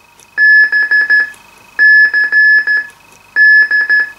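Kenwood TS-790E transceiver beeping through its speaker as its tone-select button is pressed three times. Each press stepping to the next CTCSS tone of the fitted PBCT1A encoder gives a burst of beeps at one steady pitch, a pattern of long and short tones like Morse code.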